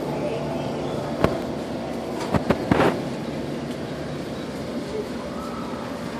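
Indoor shop room tone: a steady mechanical hum under a general noise bed, with a sharp click about a second in and a few more clicks and knocks around two and a half seconds in.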